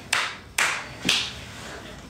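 Three hand claps about half a second apart, each sharp and fading quickly.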